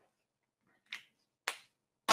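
A whiteboard marker being handled and set down on the easel's tray: a faint tap, then a sharp plastic click about half a second later, in an otherwise quiet room.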